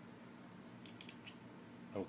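Faint steady hum with a few small, quick clicks about a second in, from hands working a cable plug at the mini PC's port.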